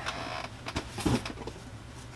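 Rustling and scraping of cardboard and packing as boxed Funko Pop figures are handled inside a shipping box, with a few light knocks about a second in.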